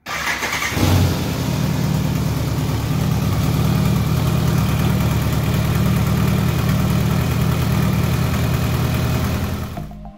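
BMW K1100's inline four-cylinder engine starting about a second in and then idling steadily. It runs rough and loud, because one of the exhaust headers is cracked and leaking.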